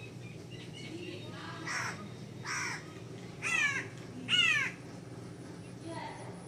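A crow cawing four times at under a second's spacing, the last two caws louder, over a faint steady background hum.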